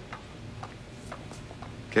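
Faint, regular ticking, about two ticks a second, over a low steady hum.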